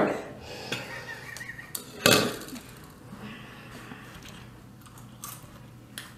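Quiet, breathy, wheezing laughter, with one louder burst of it about two seconds in.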